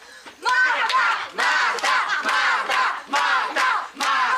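A group of adults and children shouting and cheering together at the top of their voices, bursting in about half a second in, with hand claps throughout.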